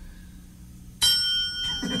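A single bright bell-like ding about a second in, several clear tones that ring on and fade over about a second.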